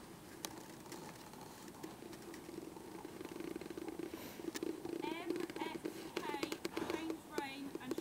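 Horse trotting on a sand arena surface: soft, scattered hoofbeats over a low steady rumble, with quick high chirps joining in about five seconds in.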